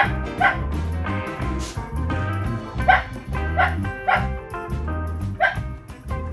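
Shetland Sheepdog barking in about six short, high yips, two near the start and four in the second half, over background music.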